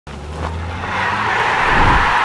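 Intro sting sound effect for a logo animation: a rushing whoosh that swells steadily louder over a low rumble.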